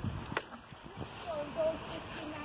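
A single sharp knock of a hard object about a third of a second in, after a couple of dull thumps, over handling noise and faint distant voices.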